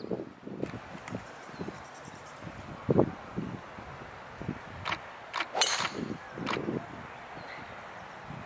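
A golf driver striking a teed-up ball: one sharp crack a little past halfway, with a few other short clicks just before and after it.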